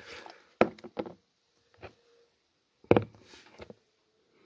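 A beer glass and an aluminium can handled on a windowsill: five short knocks and taps in about three seconds, the loudest about three seconds in, with faint rustling between.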